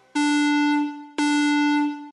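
Electronic countdown-timer sound effect: two identical steady buzzer-like beeps, each just under a second long, the second about a second after the first, as the timer runs out to zero.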